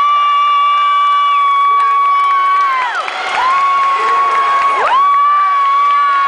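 Contest audience cheering, with one long, high-pitched call held on a single note three times, each sweeping up at the start and sliding down at the end.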